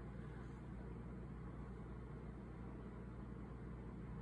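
Quiet room tone: a steady low hum under a faint even hiss, with no distinct sounds.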